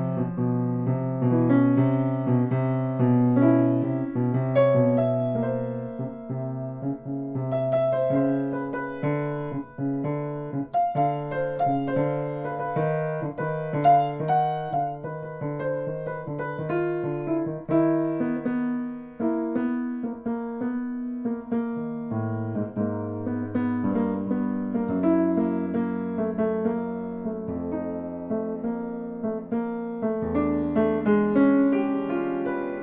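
Solo piano free improvisation with both hands: held low bass notes under busier chords and runs higher up. About two-thirds of the way through, the bass steps down lower.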